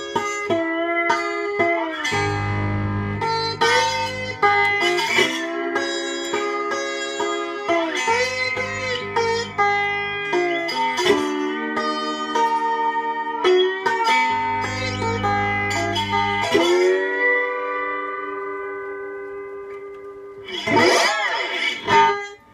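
Homemade poplar-wood lap steel guitar played with a bottleneck slide: gliding slide notes over picked strings, with deep bass notes rung out three times. The notes fade away, then a quick strummed flourish near the end.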